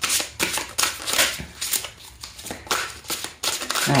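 A deck of tarot cards being shuffled by hand: a string of quick, crisp card flicks, a few a second, with a short lull near the middle.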